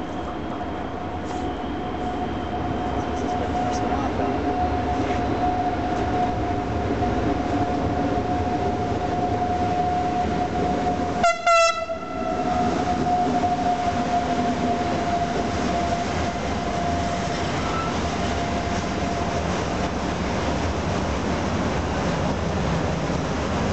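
An electric freight locomotive approaches and runs through with a steady high whine that drops slightly in pitch as it goes by. About halfway through it gives one short, loud horn blast. The freight wagons then rumble past over the rails.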